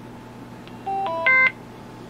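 Retevis RB22 DMR handheld radio playing its power-on tone: a short tune of three beeps about a second in, the last one loudest. The radio boots after being put back together.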